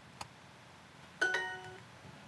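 A single soft click, then a short, bright two-note chime from the Duolingo app that rings out and fades within about half a second.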